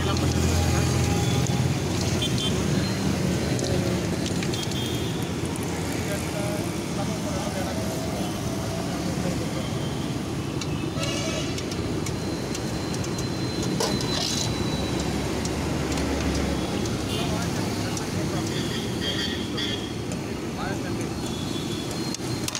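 Roadside traffic ambience: a steady rumble of passing vehicles, with a couple of horn toots partway through and voices in the background.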